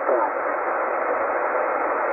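Tecsun PL-990x shortwave receiver in upper-sideband mode giving out steady, narrow-band static hiss during a brief pause in the marine weather broadcast voice, which trails off just after the start.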